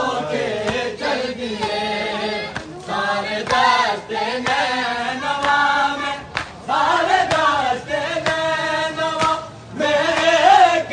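A group of men chanting a Shia noha (mourning lament) together, their voices rising and falling in sung phrases with short breaks between them.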